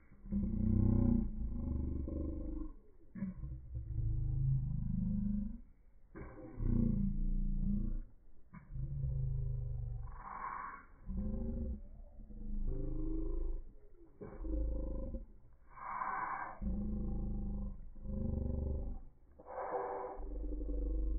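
Slow-motion playback audio: the sounds of the scene slowed far down into deep, drawn-out rumbling pulses with sliding pitch, a new one every second or two.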